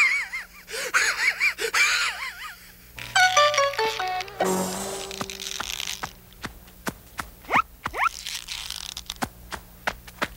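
Cartoon soundtrack of comic music and sound effects: a wavering, warbling tone in the first two seconds, then a run of notes stepping downward. About four and a half seconds in comes a short crash-like burst, followed by scattered clicks and quick rising whistles.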